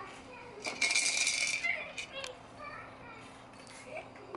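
A plastic toy on a baby's activity center rattled by hand for just under a second, a bright jingling with a faint ring in it, about a second in.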